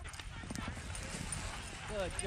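Rapid footfalls of a sled dog team running past on snow, a steady patter of many paws.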